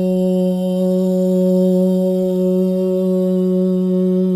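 Harmonium reeds holding one steady drone note with its overtones, unwavering, as the opening drone of a devotional song.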